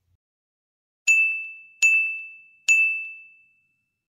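An electronic ding sound effect plays three times, starting about a second in and about three quarters of a second apart. Each ding is one high ring at the same pitch that fades out.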